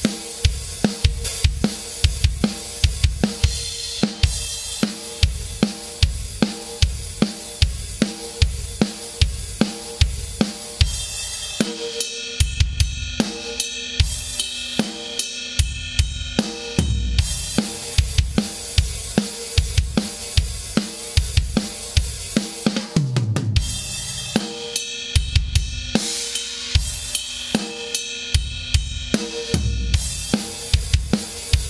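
Rock drum kit playing a steady beat of kick drum and snare with cymbals and hi-hat, with a short break about three-quarters of the way through.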